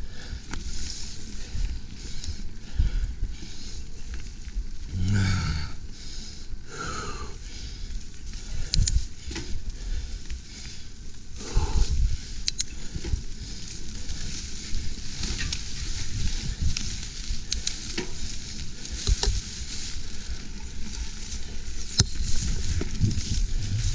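Mountain bike rolling along a dirt singletrack through tall grass: a steady rustling of grass stalks brushing the bike and rider, over tyre noise, with scattered sharp clicks and rattles from the bike.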